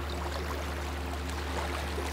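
Steady background of gentle shallow water lapping at the shore, with a constant low hum underneath.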